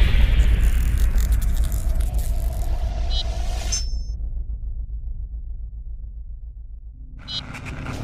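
Logo-sting sound effect: a deep rumble that fades slowly, with a hissing, crackling top that cuts off about four seconds in. Near the end a second rumble and fizz swell up.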